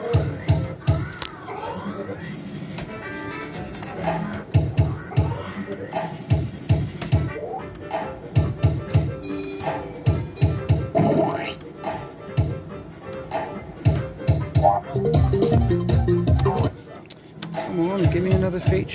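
Crazy Fruits fruit machine playing its electronic music and sound effects as the reels spin, over a pulsing beat with short chirpy jingles and pitch glides.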